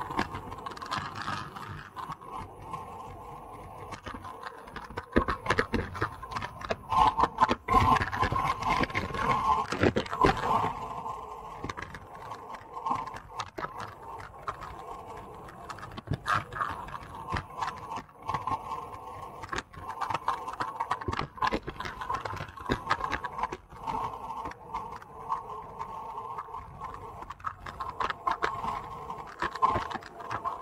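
Wind rushing over a bike-mounted camera and tyre noise on asphalt while a road bike descends at speed, with a steady hum and irregular gusts and bumps that are louder from about five to eleven seconds in.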